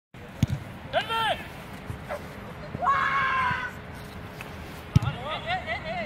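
Voices shouting on a sports pitch: a short call about a second in, a long held shout in the middle, and quick excited calls near the end. Two sharp thuds come near the start and about five seconds in.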